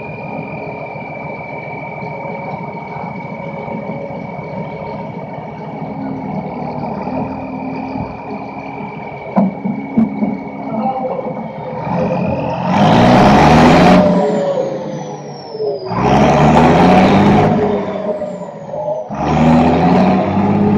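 Case 1455XL tractor's diesel engine running steadily with a constant high whine, then revved hard three times about three seconds apart. Each rev climbs in pitch and is followed by a falling whistle as the engine winds back down.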